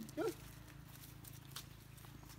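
A brief syllable of a voice right at the start, then a quiet outdoor background with a few faint clicks.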